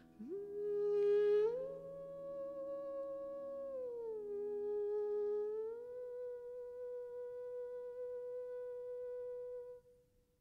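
A woman humming a slow, wordless tune with closed lips: the voice slides up into a note, steps higher, dips, then settles on a long held note that cuts off suddenly near the end. A faint low drone sounds under the first half and fades away.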